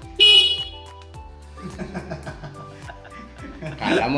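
Motorcycle electric horn giving one short, loud beep about a quarter of a second in, over background music.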